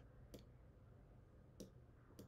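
Near silence: faint room tone with two faint clicks, one about a third of a second in and one near the end, from a stylus tapping a tablet screen as handwriting is added.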